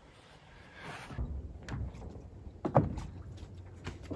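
A few hollow knocks and thumps on a floating wooden log dock, as of footsteps and gear moving on it, over a low rumble of wind on the microphone; the loudest knock comes near the end. The chainsaw is not running.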